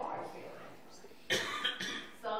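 A person coughing twice in quick succession, short sharp coughs a little past halfway through, after some low talk.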